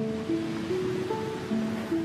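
Soft background music of held notes over a steady rush of ocean waves: a stormy-sea sound effect.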